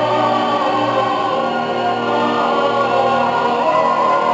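Orchestral easy-listening music from a 45 rpm vinyl single playing on a small record player, with sustained held chords at a steady level.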